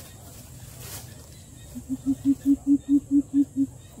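A coucal calling: a run of about ten deep, evenly spaced hoots at one steady pitch, about five a second, lasting under two seconds, starting about halfway through.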